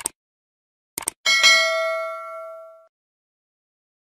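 Subscribe-button sound effect: a mouse click, two quick clicks about a second in, then a bell notification ding that rings with several steady tones and fades out over about a second and a half.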